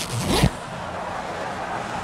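A short zip-like whoosh sound effect about half a second in, followed by a hissing noise that swells steadily.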